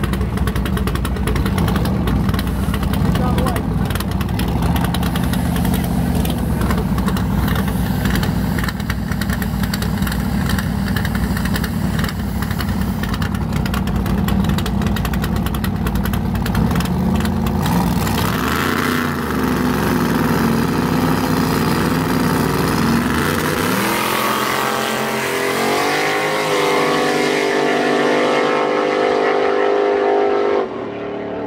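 Two drag cars idling loudly side by side at the starting line, then revving from about 18 seconds in. They launch and pull away, the engine note climbing in pitch in several steps through the last few seconds.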